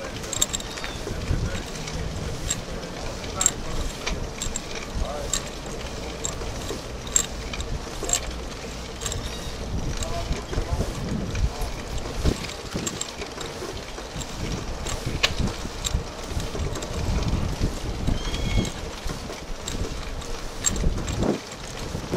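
Wind rumbling on the microphone of a camera riding along on a bicycle, with frequent sharp clicks and rattles from the bike over the paved path.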